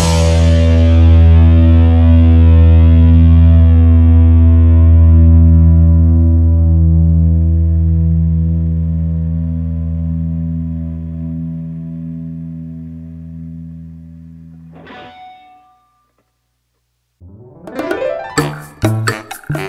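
Background rock music: one long distorted electric-guitar chord rings out and slowly fades over about fifteen seconds, then cuts to a short silence before new music starts near the end.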